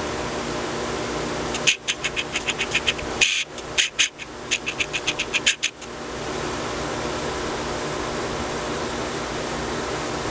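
Steady hum of ventilation fans, with two runs of quick, sharp clicks, several a second, between about two and six seconds in.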